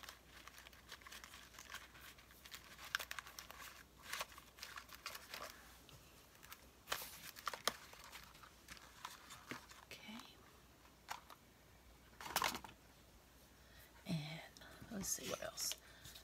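Paper cards and scraps being rummaged through in a plastic tub: quiet crinkling and rustling with scattered light clicks and taps. A soft voice murmurs near the end.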